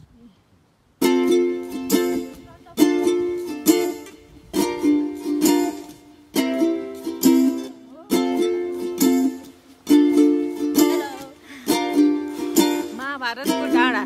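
Background music: strummed plucked-string chords, ukulele-like, starting about a second in and struck roughly once a second.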